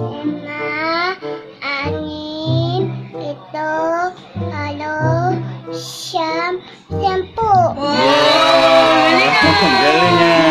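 A small child singing short phrases in a high voice over quiet backing music. About seven and a half seconds in, a much louder pop dance track comes in and covers everything else.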